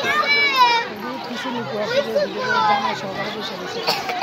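Several children's voices, high-pitched, calling and chattering over one another, loudest in the first second.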